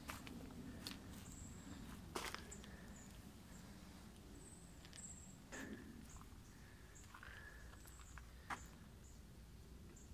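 Near silence: faint footsteps and rustling on grass and leaf litter, with a few soft knocks and some faint, short high chirps.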